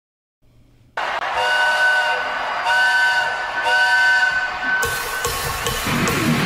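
A steam-train whistle blown in three blasts, each starting with a hiss, over the noise of a concert crowd. Near the end a rock band's guitars and drums come in.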